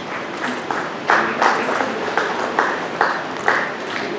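Audience clapping, a run of distinct claps at about three a second over a steady hiss, as a lecturer is honoured on stage.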